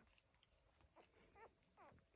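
Faint room tone with two short, high squeaks from newborn puppies nursing, near the end.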